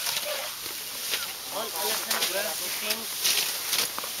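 Faint voices talking at a distance, with crisp rustling of tall grass as elephants graze and move through it; the rustling is strongest near the end.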